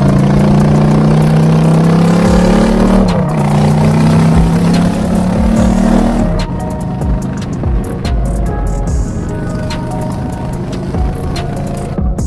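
Motorcycle engine accelerating, its pitch climbing, dropping at a gear change about three seconds in and climbing again. About six seconds in, electronic music with a steady beat takes over.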